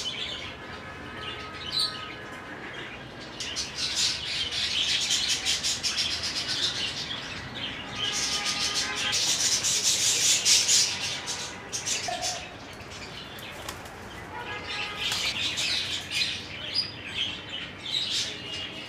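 Aviary ambience: a crowd of caged birds chirping and twittering, with wing flaps. The chatter swells louder twice and then settles back.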